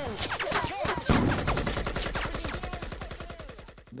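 Combat gunfire: a rapid rattle of automatic weapons fire, with a loud shot about a second in, the shots fading toward the end.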